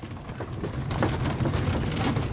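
Steady low rumbling noise with dense, irregular crackling hiss over it, growing louder over the first second.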